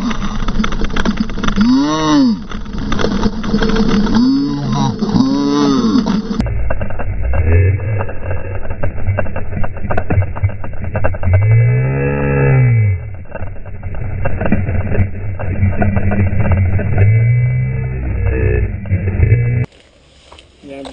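Slowed-down helmet-camera audio: long, deep, drawn-out voice sounds that rise and fall in pitch over a dense rumble of wind and trail noise. The sound drops lower still about six seconds in, as the replay slows further.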